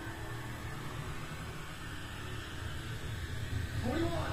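Steady hiss with a low rumble underneath, with no distinct event; a voice-like sound rises right at the end.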